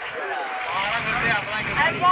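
People talking, with a low rumble underneath that comes in about a third of the way through.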